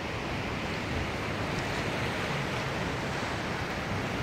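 Sea surf washing over a rocky shore: a steady rush of waves.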